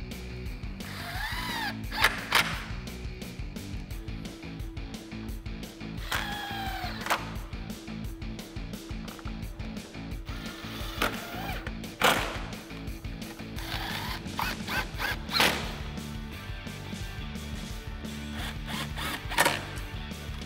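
Cordless impact wrench run in short bursts on the headlight mounting screws, its motor whining up and falling away twice, with several sharp clicks and knocks of the socket and screws, over background music.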